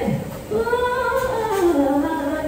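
A woman singing one long held note into a microphone, the pitch swelling and then sliding down near the end, with almost no accompaniment.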